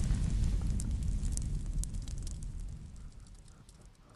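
Cinematic fire sound effect: a deep rumble with scattered sharp crackles, fading away over the last couple of seconds.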